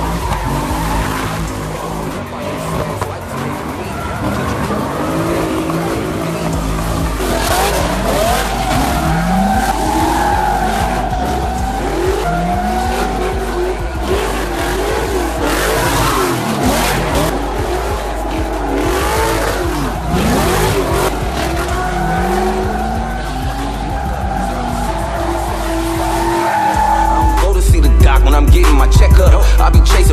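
Car engines revving up and down hard while the cars spin donuts and do burnouts, with tyres squealing and skidding on the asphalt.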